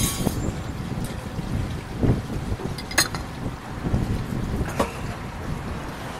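Wind buffeting the microphone outdoors: an uneven low rumble, with a sharp click about three seconds in.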